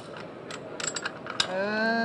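Podger ratchet wrench clicking a few times, irregularly, as it winds a knocker-line tensioner, a winch-style spool. A man's voice starts near the end.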